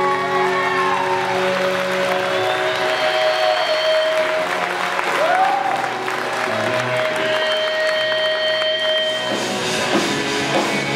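Crowd applauding and whistling at a rock concert while electric guitars ring on with long held tones. Near the end the band comes in with drums and guitars to start the next song.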